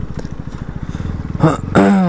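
KTM Duke single-cylinder engine running at low revs as the bike rolls slowly, a rapid, even train of firing pulses. A man's voice cuts in near the end.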